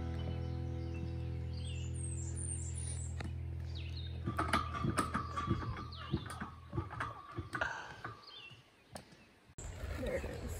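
Footsteps knocking on the wooden planks of a suspension footbridge, an irregular run of thuds through the middle of the clip, while the last held notes of background music fade out and birds chirp.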